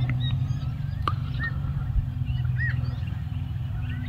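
A steady low rumble with several short, arched bird chirps scattered through it.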